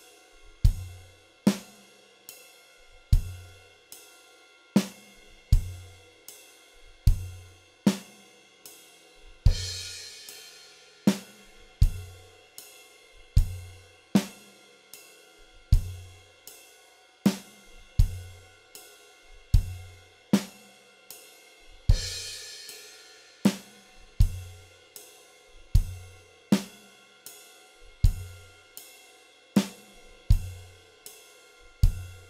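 Acoustic drum kit playing a slow, steady rock beat: ride cymbal, kick drum and snare backbeat locked in a repeating bar. A crash cymbal rings out about nine seconds in and again about twenty-two seconds in.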